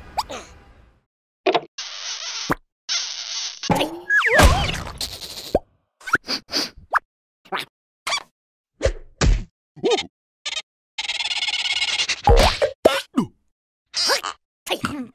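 Cartoon sound effects: a quick series of short plops and smacks, broken up by brief squeaky vocal noises from the animated characters.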